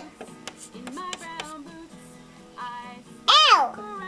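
Background music plays steadily while a toddler gives a short high-pitched squeal about three-quarters of the way through.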